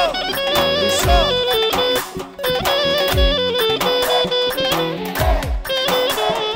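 Live band playing fast Balkan Roma wedding dance music: a clarinet leads with quick ornamented runs over keyboard, guitar and drums. A deep drum hit lands every couple of seconds.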